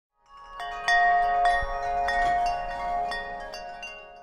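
Chimes ringing: a string of irregularly spaced metallic strikes, each tone ringing on and overlapping the others, swelling in from silence just after the start and fading away toward the end.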